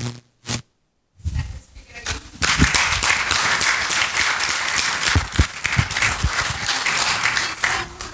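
Audience applauding: after a short silent gap, many hands start clapping about two and a half seconds in and keep up a dense, steady applause that dies away near the end.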